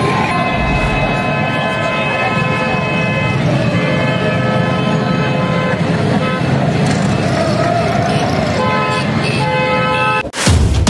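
Vehicle horns honking over the chatter of a street crowd. There is a long held blast of about three seconds, then another of about two seconds, then a run of short toots near the end.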